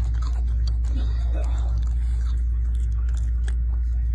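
A raccoon chewing and crunching food close up, a quick run of small irregular clicks, over a loud steady low hum.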